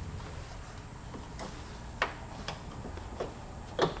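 A handful of light, sharp clicks and taps from a tent's hooks and fabric being worked at the wheel arch, spaced irregularly about half a second to a second apart, the loudest near the end, over a low steady room hum.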